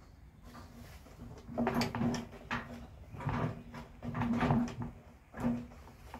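A screw being turned into the mower handle's plastic housing: a series of about six short creaks and scrapes of uneven length. One of the screws feels like it's not going to get tight in the plastic.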